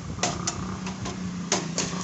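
Metal tongs clicking against a cooking pan while roti maryam fries: four sharp clicks in two pairs, over a steady low hum.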